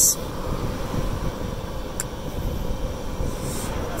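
Golf cart driving along: a steady running noise of motor, tyres and air, with a faint steady hum and one small tick about halfway through.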